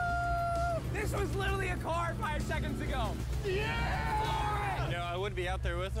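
Speech over background music, with a steady low hum underneath.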